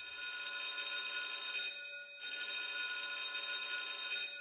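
Outro sound effect of a bell-like ringing tone, sounded twice: a ring of nearly two seconds, a short break, then a second ring that fades out near the end.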